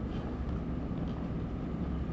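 Room tone: a steady low rumble with a faint hiss and no speech.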